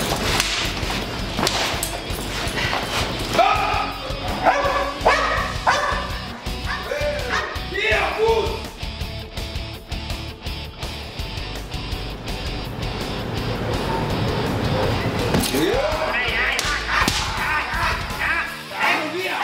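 A dog barking, a quick run of short barks a few seconds in, over background music.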